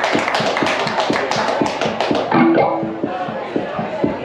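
Live band music: fast, evenly spaced percussive strokes until about halfway, when they drop away and a few held plucked-string notes ring out.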